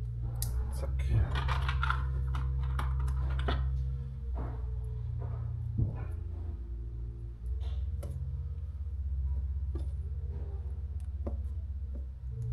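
Small clicks and fiddly handling noises from fingers working the bare ends of an LED high-bay lamp's power cable, scattered irregularly over a steady low hum.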